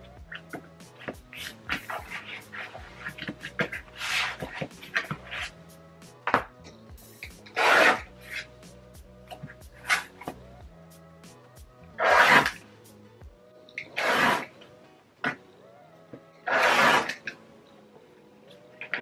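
Rotary cutter slicing through cotton fabric along an acrylic quilting ruler on a cutting mat: four loud strokes of about half a second each, the first near the middle and three more in the second half. Between them come light taps and rustles as the fabric and ruler are handled.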